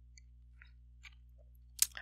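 Near silence: a faint steady low hum with a few very faint ticks, and a single click near the end.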